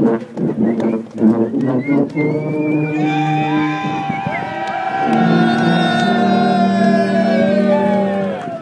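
A section of sousaphones playing together, first shorter notes, then a long held chord from about five seconds in.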